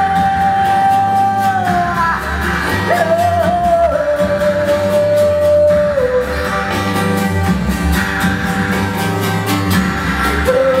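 A woman singing long held notes that step down in pitch every few seconds, over guitar accompaniment.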